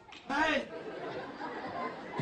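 Speech: a short spoken word from a man about a third of a second in, then low hall noise.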